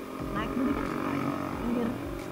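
Mostly speech: a man's short spoken words, over the steady hum of a motorcycle and street traffic.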